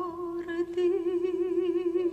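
Singing: one long held note with vibrato, with a second part joining about half a second in.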